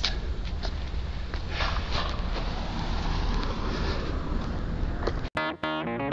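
Steady outdoor background noise with a low rumble, no speech. It cuts off suddenly about five seconds in, and guitar music begins.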